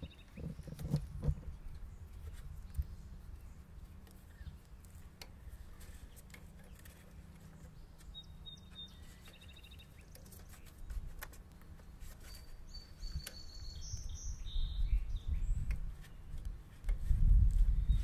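Scattered light clicks and handling noise from electrical connectors being pulled off and swapped on hydraulic valve solenoids. A few bird chirps come through, with a low rumble that grows near the end.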